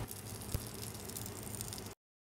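Kielbasa sizzling on a small tabletop grill: a faint, steady crackling hiss, with one sharp click about half a second in.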